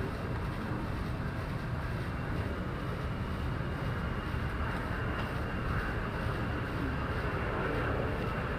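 Jet engine noise from an F-22 Raptor's twin turbofans on takeoff, heard from a distance as a steady low rush with a faint high whine.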